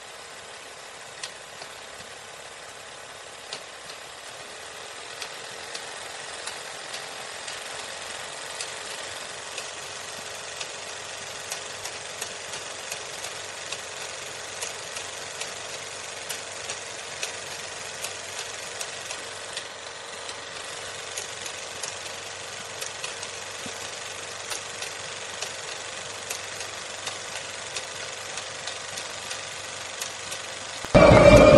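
Steady crackling hiss, with no speech and no music: an even noise dotted with frequent small clicks, growing a little louder over the first few seconds and then holding level.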